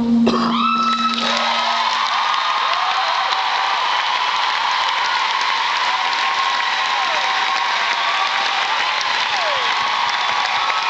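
The last acoustic guitar chord rings out and fades, and a concert audience breaks into applause and cheering that keeps up steadily, with whoops and a few falling whistles.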